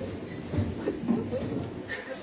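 Low, uneven rumbling room noise in a hall, with faint indistinct voices murmuring in the background.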